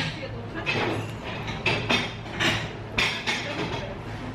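A person biting into and chewing a bread roll, a run of short crunching sounds about two a second, over a faint steady low hum and background chatter.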